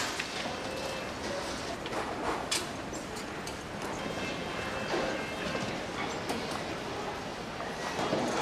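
Steady background hubbub of a busy indoor hall, with faint distant voices and a few soft knocks and footsteps.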